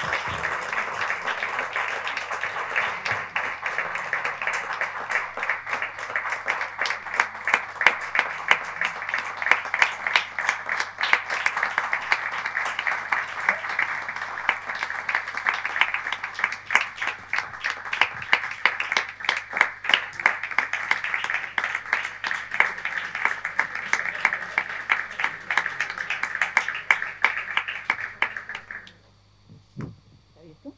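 Audience applauding: dense, steady clapping that stops abruptly near the end.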